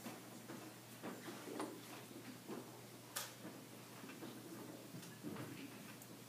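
Quiet hall with scattered faint clicks and small knocks, one sharper click about three seconds in.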